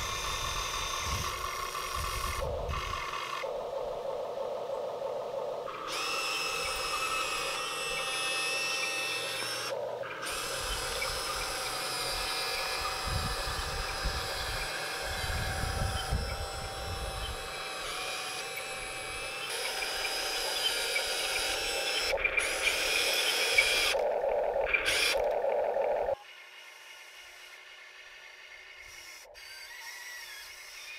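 Small electric motors of a 1/14-scale RC excavator whining steadily as it works, the pitch and loudness jumping abruptly several times. The sound drops much quieter near the end.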